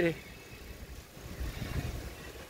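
Low rumbling wind noise on a phone's microphone while cycling, a little stronger about one and a half seconds in.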